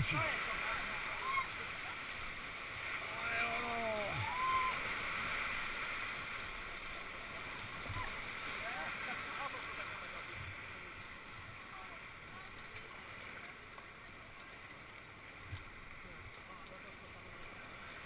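Whitewater rushing around an inflatable raft as it runs a rapid in an artificial whitewater channel, loudest in the first few seconds and easing off after. A few short shouts from the crew rise over it a few seconds in, and again briefly around eight seconds in.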